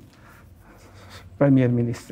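A man speaking: a pause of about a second and a half with only faint room noise, then his voice comes back with one long drawn-out syllable.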